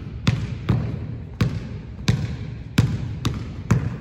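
A basketball being dribbled on a hardwood gym floor, about seven bounces at an uneven pace, each echoing in the large hall.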